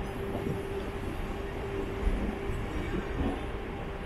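Mumbai suburban local (EMU) train running slowly, heard from its open doorway: wheels rumbling and knocking over the rails and points, with a steady tone underneath. The loudest knock comes about two seconds in.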